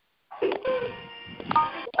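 Telephone conference line picking up callers' unmuted phones: muffled overlapping voices and background sound with short keypad tones from callers pressing keys to mute. It starts a moment in, after a brief silence.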